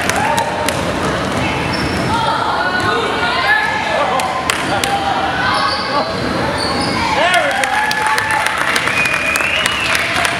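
Basketballs bouncing on a hardwood gym floor in repeated knocks, echoing in a large gym, with players and spectators calling out over them.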